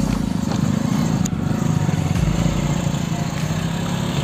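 Motorcycle engine running steadily at low revs close by, a low hum with a fast even pulse, with a few low rumbles of wind on the microphone.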